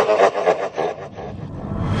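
Tail of a heavily effected DJ voice tag fading out in echo, then a noisy swell rising in loudness into the start of the track.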